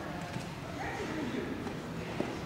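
Indistinct background chatter of voices, with a few light knocks early on.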